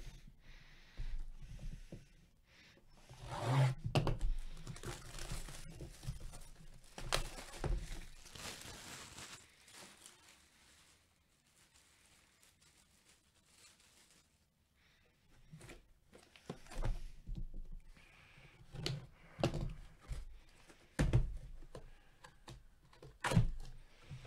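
Corrugated cardboard box being opened by hand: tearing and rustling for several seconds, a pause, then a run of light knocks and thunks as the cardboard lid and flaps are handled.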